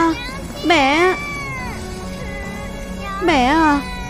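A child's voice wailing in grief, three drawn-out, wavering cries of 'mother' (娘亲), over steady background music.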